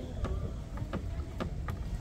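A kitchen knife tapping against a plate as vegetables are cut on it: about five sharp, uneven taps over a steady low rumble.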